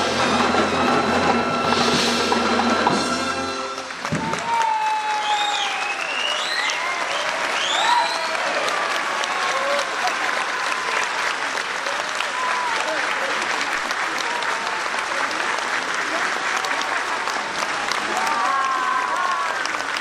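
A military concert band holds its final sustained chord, which cuts off just under four seconds in. Sustained applause follows, with scattered calls from the crowd.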